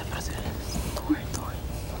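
Quiet studio room noise with faint low voices and soft handling rustles from a handheld microphone as it is moved.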